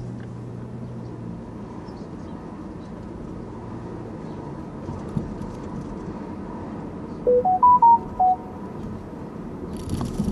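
Steady road and engine rumble inside a moving car's cabin. About seven seconds in, a short electronic chime of five quick tones that rise and then fall in pitch sounds over it.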